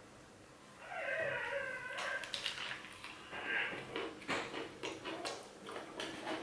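Biting into and chewing a crispy fried chicken sandwich close to the microphone: irregular crunchy crackles and snaps of the breaded coating between the teeth. A short hum-like voiced sound comes about a second in.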